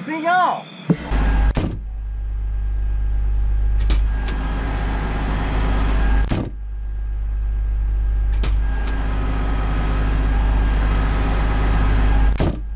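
A fire truck's diesel engine running with a steady deep rumble, broken off twice for a moment, with a few sharp clicks along the way.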